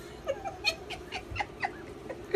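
A small pet making a rapid run of short, falling squeaky cries mixed with clicks, about five a second.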